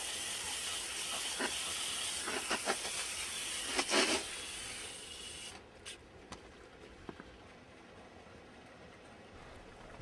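Garden hose spray nozzle jetting water onto a crate of lava rock: a steady hiss with a few brief louder splashes, cutting off about five and a half seconds in. After that only a few faint ticks.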